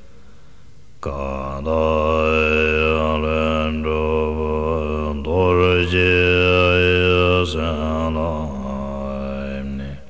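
Deep male voice chanting a Tibetan Buddhist prayer to Guru Rinpoche in long, slowly bending held notes over a low steady hum. The chant comes in about a second in and runs in several phrases, loudest in the middle.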